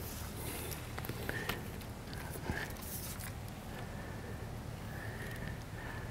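Quiet outdoor background with a few faint clicks and rustles from handling and movement close to a clip-on microphone.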